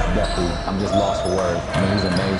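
A basketball bouncing on a hardwood gym floor amid players' voices, with faint music underneath.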